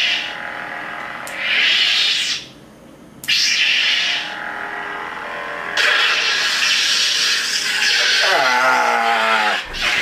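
Electronic lightsaber sound effects from a Plecter Labs Crystal Focus v1.2 saber board through the hilt's speaker: a sudden ignition into a steady hum that swells and fades with swings, a second ignition a few seconds in, and near the end the retraction sound falling steadily in pitch as the blade powers down.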